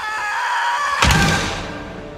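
Animated-film creature sound effects: the Hydra's pitched, screeching roar over orchestral score, with a loud, heavy hit about a second in.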